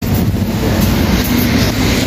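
Wind buffeting the microphone: a loud, steady low rumble mixed with street noise, starting suddenly at a cut from music.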